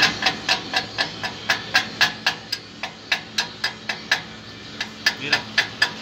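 Chipping hammer tapping the slag off a fresh stick-weld bead on a steel differential axle housing: quick metallic taps about four a second, lighter through the middle.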